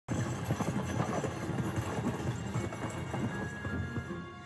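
Horse hooves clip-clopping in quick, irregular beats as a horse-drawn carriage rolls along, with a music score coming in faintly near the end.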